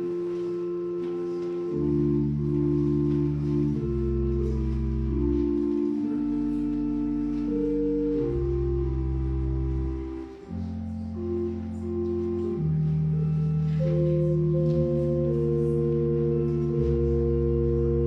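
Organ playing slow held chords over a deep bass line, with the chords changing every second or two and a brief drop in loudness about ten seconds in.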